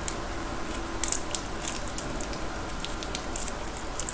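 Sauce squeezed from a small plastic packet onto a cheese-topped corn dog, heard close up as scattered short crackly clicks and squishes.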